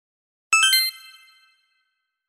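A sparkling chime sound effect: three quick bell-like notes, each higher than the last, starting about half a second in and ringing out for about a second before fading away.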